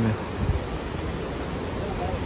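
Fast mountain river rushing over rapids: a steady, full roar of white water.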